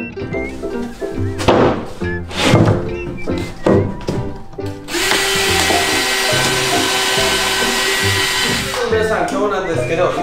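Cordless power driver running, driving screws into plywood subfloor sheets, with one long continuous run from about halfway through until shortly before the end, over background music.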